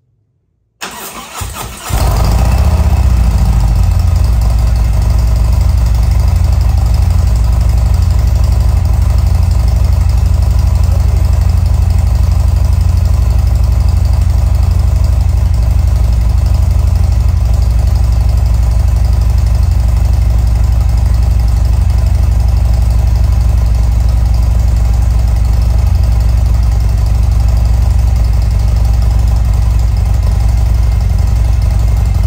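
Harley-Davidson Milwaukee-Eight V-twin, bored to 114, cranks on its starter for about a second, then catches and settles into a steady idle through its Fuel Moto 2-1-2 exhaust. This is the first start after fitting a 58 mm HPI throttle body and intake manifold, and it runs with no intake leaks.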